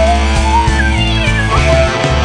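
Rock song played by a full band: guitars and bass over drums, with a high lead line sliding up and down between notes.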